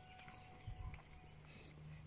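Near silence: quiet outdoor ambience with a cluster of soft low thumps just before the middle and a faint steady tone that stops a little after a second in.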